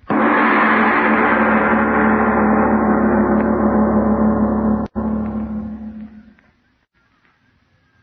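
Loud gong-like dramatic sting from the radio play's sound track. It strikes suddenly, rings with many steady tones, and holds for about five seconds. It cuts out briefly and then fades away over the next second and a half.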